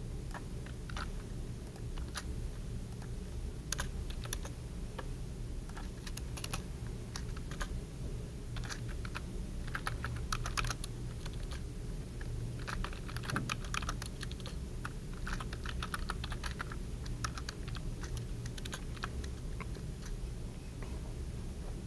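Typing on a computer keyboard: irregular runs of key clicks, busiest in the middle of the stretch, over a steady low hum.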